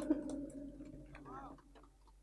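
A voice trailing off through the stage microphone, fading out over about a second and a half with a few light ticks, then near silence.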